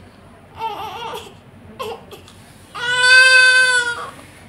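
Newborn baby fussing with a couple of short wavering cries, then breaking into one long, loud cry at a steady pitch near the end.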